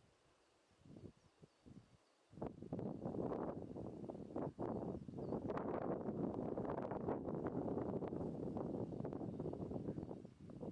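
Wind buffeting the microphone in gusts, starting suddenly about two seconds in and going on loud and unsteady.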